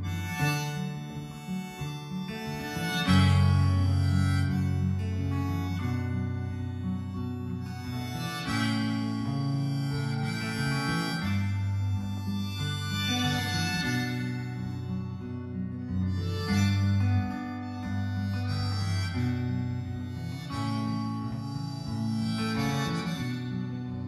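Harmonica played from a neck rack in phrases of sustained, swelling notes over strummed acoustic guitar chords: an instrumental harmonica break in a folk song.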